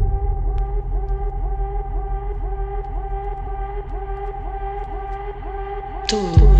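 Electronic dance music in a breakdown: the heavy bass drops back, leaving a sustained synth drone with a short rising synth sweep repeating about three times a second, slowly getting quieter.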